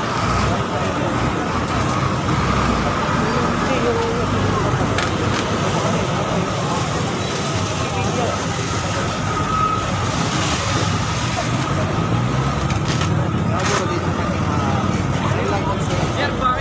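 Busy street ambience: steady traffic noise with people talking in the background, and a few short sharp knocks.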